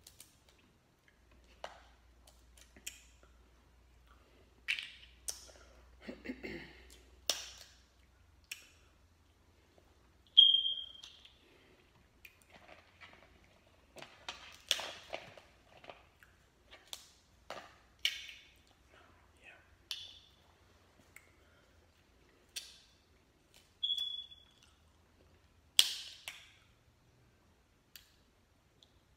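Crab leg shells being cracked and pulled apart by hand, a scattered run of sharp cracks and clicks. Two short ringing pings come about ten seconds in and near the end.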